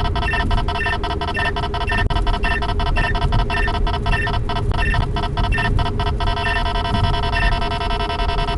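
Radar detectors sounding a Ka-band alert: rapid electronic chirps about five a second with short pitched beeps, over car road noise. About six seconds in the rapid chirping stops, leaving steadier tones with an occasional beep.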